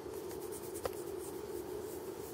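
A cat's fur and whiskers rubbing and scratching against the camera microphone at close range, with one small click a little under a second in.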